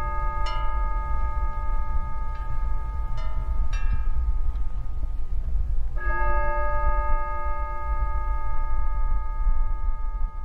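Chime bells ringing in long, sustained tones, with lighter strikes around three to four seconds in and a strong fresh strike at about six seconds. A steady low rumble runs underneath.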